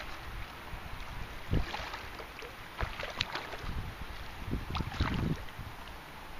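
A large hooked rainbow trout thrashing and splashing at the surface of a river, in several irregular bursts, with wind rumbling on the microphone.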